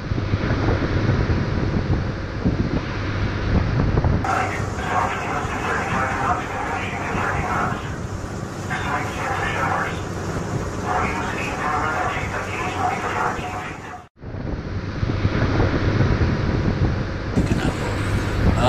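A fishing tug running through rough water: a steady low engine hum under rushing spray and wind noise on the microphone. The sound cuts out sharply about 14 seconds in, then resumes.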